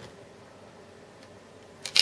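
Plastic back cover of a Nokia E63 phone being unclipped and taken off: faint for most of the time, then a small click and a short, louder plastic snap and scrape near the end as the cover comes free.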